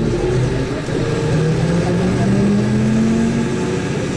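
Vehicle engine accelerating, its pitch rising steadily over a constant road rumble, heard from inside the vehicle.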